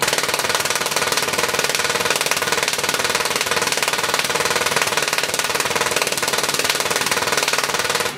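A solid-state Tesla coil, driven by a MOSFET bridge, firing its spark discharge in interrupted (staccato) mode: a loud, rapid crackling buzz that starts abruptly and cuts off abruptly near the end.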